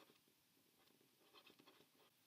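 Near silence, with faint scratching and tapping of a stylus writing a word on a tablet.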